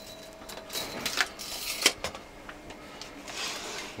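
A few sharp clicks and knocks, the loudest about two seconds in, from things being handled in a boat's under-floor compartment.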